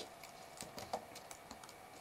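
Faint keystrokes on a computer keyboard: a few separate taps as code is typed.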